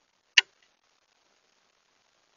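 A single sharp click, then a faint tick a moment later: the Campark TC17 trail camera switching from infrared night mode to colour as its white light comes on.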